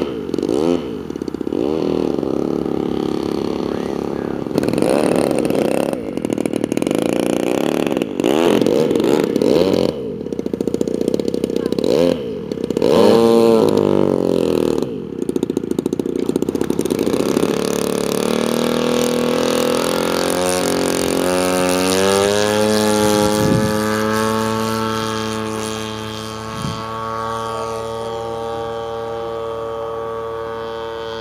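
Zenoah G-38 two-stroke gasoline engine of a quarter-scale radio-control biplane, revved up and down repeatedly, then rising to a steady high-throttle note about two-thirds of the way in as the model takes off and climbs away.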